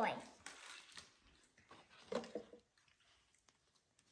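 Soft rustle of tissue-paper wrapping being pulled off a plush toy, lasting about a second, then quiet.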